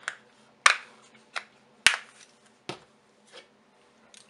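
About six sharp clicks and taps, irregularly spaced, from handling a cayenne pepper spice container, its lid and bottle knocking as it is opened and shaken.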